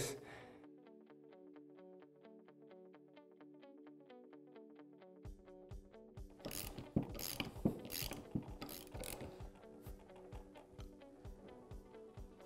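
Soft background music with evenly repeating plucked notes. From about five seconds in, light metallic clicks and clinks of the bearing-press tool parts (aluminium bearing driver, cup, threaded rod, washers) being fitted onto an aluminium dirt-bike shock link.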